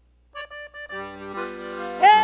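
Accordion starting a forró tune: a few short notes about a third of a second in, then held chords.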